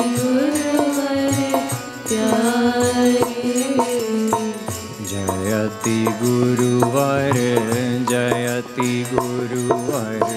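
Hindu devotional kirtan: a male voice chants a slow melodic line over sustained harmonium notes, with regular drum strikes keeping the beat.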